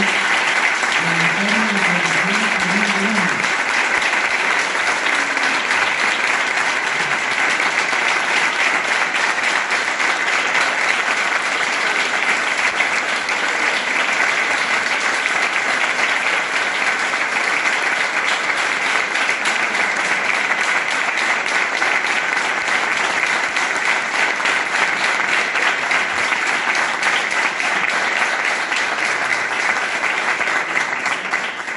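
Audience applauding: a long, steady round of clapping from many hands.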